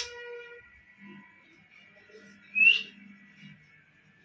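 An Alexandrine parakeet gives a single short, sharp, whistle-like chirp about two and a half seconds in, over a faint steady background tone.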